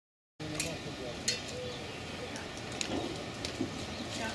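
Scattered sharp knocks and clicks from work on the roof of a wooden garden shed, over faint, distant voices; the loudest knock comes a little over a second in.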